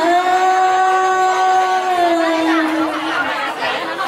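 A singer holding one long note in traditional Thai (hát Thái) style. The pitch holds steady for about two seconds, then slides down near the end, over a murmur of crowd chatter.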